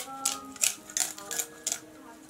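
Cleaver cutting a whole fish open along its backbone on a wooden board: a run of short, crisp scraping strokes, about six in two seconds, over background music.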